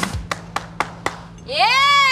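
A rock song stops, followed by about four single hand claps a quarter second apart from one person. Then comes a high whooping cheer that rises and falls in pitch.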